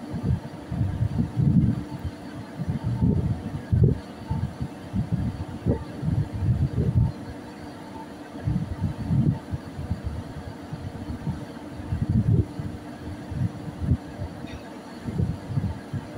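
Wind buffeting the microphone in irregular gusts over a steady low hum of ship machinery.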